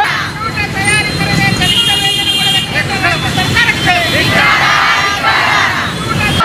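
A crowd of protesters shouting at once over a low rumble of street traffic, with a dense burst of raised voices near the end. A vehicle horn sounds briefly about two seconds in.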